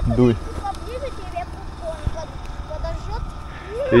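Faint, distant voices of people on an open field over a steady low rumble. No fire blast is heard.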